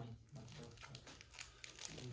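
Faint rustling and crinkling of paper, a scatter of small crackles.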